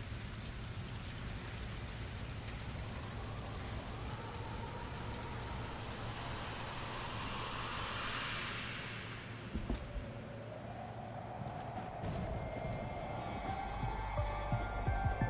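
Cinematic sound effects at the opening of a music video: a steady crackling hiss that swells to a peak about eight seconds in and fades, a few sharp knocks just before ten seconds, then a tone rising near the end.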